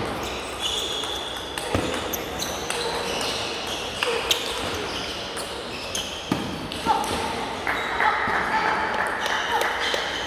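Table tennis ball clicking sharply off the rackets and table in a rally, a hit every second or so, over the murmur of voices in a large hall; a louder voice near the end.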